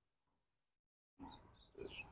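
Near silence: faint outdoor background, with a moment of complete silence about a second in and a couple of faint blips afterwards.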